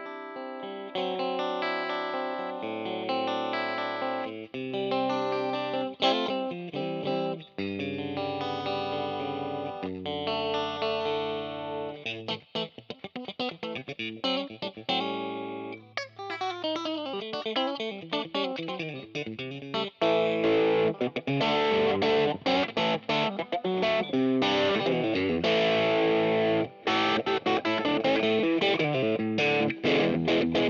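Fender Custom Shop 1960 Stratocaster Relic electric guitar played through an amp on the number two pickup setting (bridge and middle pickups together). Ringing single notes and chords come first, then a fast run of picked notes, and from about two-thirds of the way in the playing turns louder and heavier.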